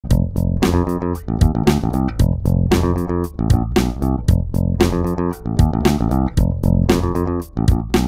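Electric bass guitar playing a funky riff at a tempo of 115, plucked with a plectrum so each note has a sharp attack.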